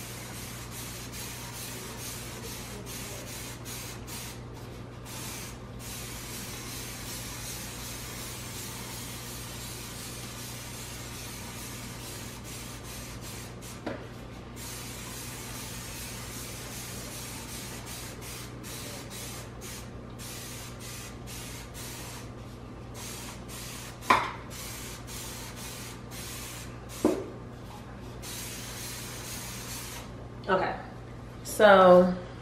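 Dawn Powerwash trigger spray bottle misting cleaner into an open oven: a near-continuous hiss broken by short pauses between trigger pulls, over a steady low hum. A few short knocks sound in the second half.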